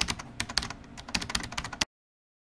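Computer keyboard typing: a quick, irregular run of key clicks that stops abruptly near the end.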